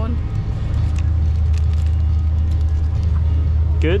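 Steady low rumble of a motor vehicle engine running close by in street traffic.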